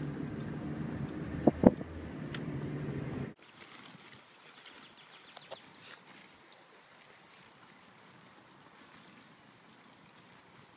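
A car's cabin noise, a steady low hum of engine and road, with two sharp knocks about a second and a half in. It cuts off suddenly a little past three seconds, leaving faint outdoor ambience with a few small ticks.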